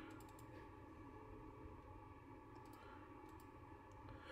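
Near silence with a low hum and a few faint clicks of a computer mouse button: a couple near the start and a short cluster about three seconds in.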